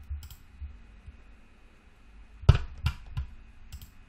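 About five sharp clicks from a computer's keyboard and mouse as a patch is edited, spaced irregularly, the loudest about two and a half seconds in.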